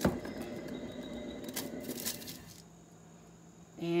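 A knock, then the spinning paint turntable whirring steadily for about two and a half seconds before it stops.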